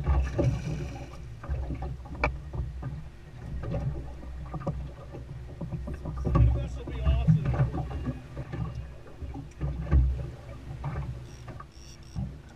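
Wind and water noise on an open fishing boat: uneven low gusts buffeting the microphone and water slapping against the hull, swelling loudest a few times.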